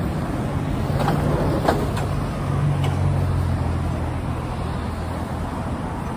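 Road traffic passing close by: the low rumble of car and van engines and tyres, swelling as a vehicle goes past near the middle.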